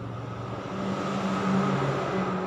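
Steady low motor hum, like a motor vehicle's engine running, growing a little louder about halfway through.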